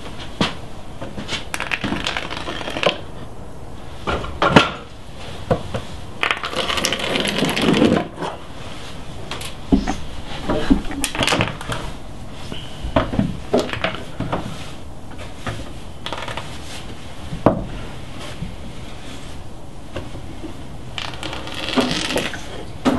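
Spray-foam gun sealing gaps in wall framing: scattered clicks and knocks of the gun and handling, with stretches of hiss as foam is dispensed, the longest about six to eight seconds in.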